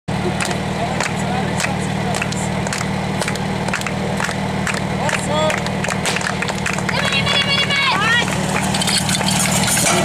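Portable fire pump's small petrol engine running steadily, with shouting voices over it in the second half.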